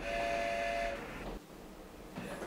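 A train whistle sounds one steady, chord-like blast for about a second, then stops.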